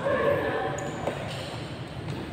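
Badminton hall sounds: a person's voice calls out briefly at the start, then a single sharp knock sounds about a second in.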